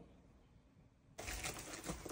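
Near silence, then about a second in a steady hiss comes in with small clicks and rustles of a heater matrix being handled.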